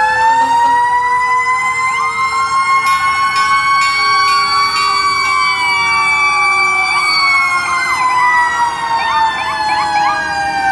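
Several emergency-vehicle sirens sounding together. One winds up just before the start into a long wail that slowly falls in pitch, while others overlap it, and short, quick rising whoops repeat near the end.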